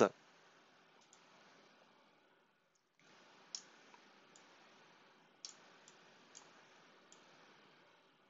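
Faint computer mouse button clicks, about seven scattered single clicks over low steady hiss.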